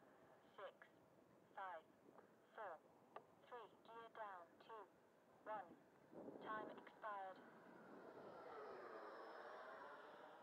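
Mostly quiet, with faint short falling chirps about once a second. Over the last couple of seconds there is the faint whine of an 80 mm electric ducted-fan RC jet coming in at low power.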